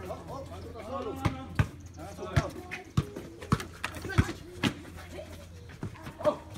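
Several voices talking in the background, untranscribed, with a series of about eight sharp thuds spaced irregularly, roughly every half second to a second.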